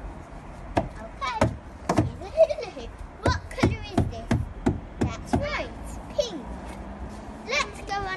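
A young girl's voice chattering and exclaiming, with a run of short sharp taps and knocks between her words.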